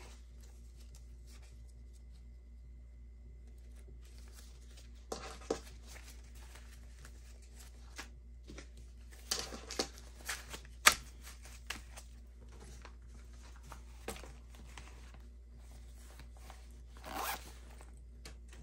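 Paper banknotes being handled and counted, rustling and flicking in short scattered bursts, with a sharp click about eleven seconds in.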